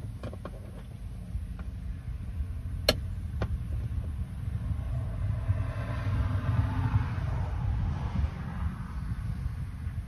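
A low rumble throughout. In the first few seconds there are sharp metallic clicks of hand tools on the truck's underside, the loudest about three seconds in. In the second half a passing vehicle swells and fades.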